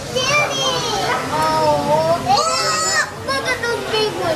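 Young children talking and calling out in high voices, with a shriller cry about two and a half seconds in.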